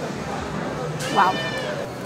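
A woman's high-pitched, drawn-out "wow" of delight at a mouthful of food, over steady background noise.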